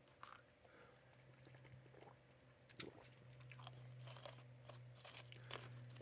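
Near silence: faint chewing and crunching of a snack, with soft scattered clicks and one slightly louder click about three seconds in, over a low steady hum.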